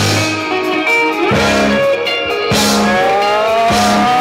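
Live rock band playing: electric guitar, bass guitar and drum kit. A guitar note slides upward about a second in, and a longer upward slide runs through the second half.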